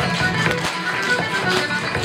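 Live Irish traditional dance music, with the dancers' steps tapping on the wooden floor.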